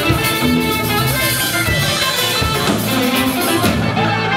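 Live rock band playing: electric guitar over a drum kit.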